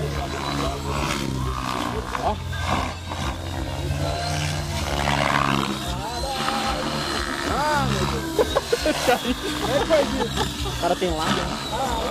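Electric radio-controlled helicopter in flight: a steady drone from its spinning rotor, with a thin high whine over it through the middle.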